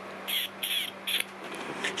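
A person making three short, high kissing squeaks at a pet cat, each lasting a fraction of a second.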